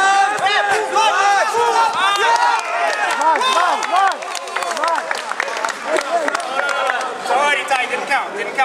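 A crowd of spectators shouting and cheering at once, many raised voices overlapping without a break, calling encouragement to grapplers on the mat.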